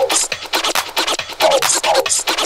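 Electronic dance music from a nonstop eurodance DJ mix, in a stretch without the kick drum: fast ticking percussion with several short falling sweeps in the mid range.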